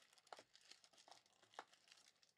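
Near silence, with a few faint crinkles and clicks from a cardboard trading-card box being handled.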